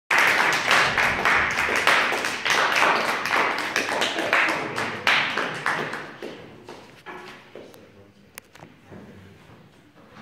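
A small audience applauding, the clapping thinning out and dying away after about six seconds, followed by a few faint knocks.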